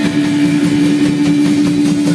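Live rock band playing, with a single note held steady through the whole stretch over a busier low accompaniment.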